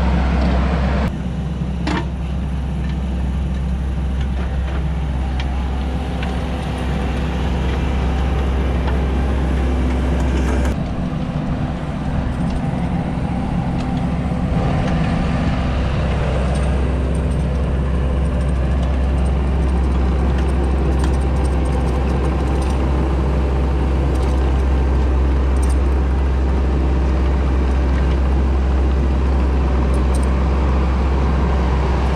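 Diesel engine of a Kubota SVL90-2 compact track loader running steadily under load as it works a Harley power rake through loose topsoil.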